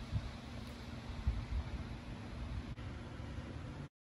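Quiet background noise, a steady hiss and low rumble with a faint hum, broken by a couple of soft bumps; the sound cuts off suddenly just before the end.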